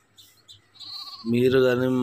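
Goats bleating: a faint distant bleat about a second in, then a loud, long bleat with a quavering pitch close by near the end.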